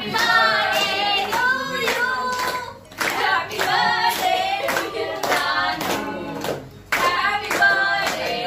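Several people singing a birthday song together while clapping their hands in time.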